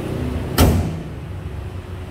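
A single solid thump about half a second in, the sound of a car panel being shut on a Chevrolet Cruze, dying away quickly over a low steady hum.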